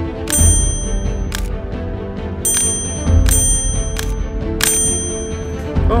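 Background music with a steady low beat and held notes, punctuated by several bright, bell-like ringing hits.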